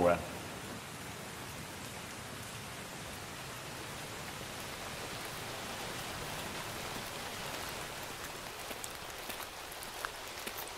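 Steady rain falling, an even hiss, with a few faint ticks near the end.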